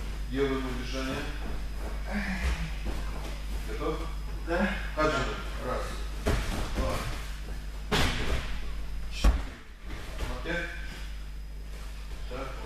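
Indistinct voices talking on and off in a large hall over a steady electrical hum, with one sharp thud a little over nine seconds in.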